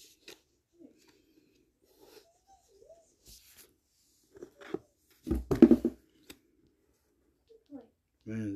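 Faint rustles and light clicks of trading cards being slid through by hand, with a short voice-like murmur over a low thud a little past the middle.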